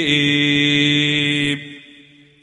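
A man's voice chanting one long held note that fades out about one and a half seconds in.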